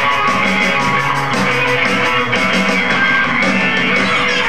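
A no-wave rock band playing live: electric guitar, bass guitar and drums together, loud and steady, over a fast, even drum beat.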